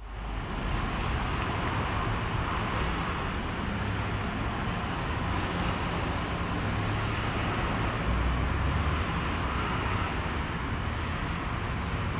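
Steady outdoor ambient noise: an even hiss over a low rumble, with no distinct events.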